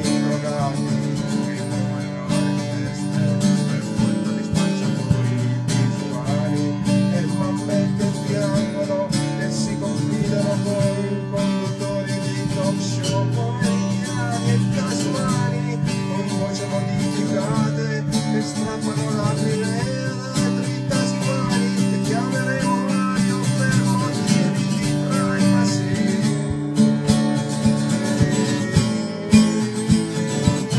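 Music: a guitar strumming chords steadily in a lo-fi, single-take recording.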